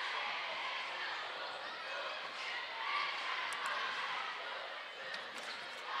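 Murmur of spectators echoing in a school gymnasium, with a basketball being dribbled on the hardwood court. A few brief, sharp high sounds come about halfway through and again near the end.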